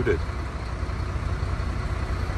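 Diesel engine of a Mercedes-Benz loader-crane lorry idling steadily, a low even rumble.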